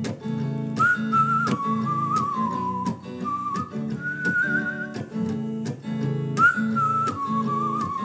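A whistled melody with a light wavering vibrato, in two phrases, the second starting a little after six seconds in, over a steadily strummed hollow-body electric guitar.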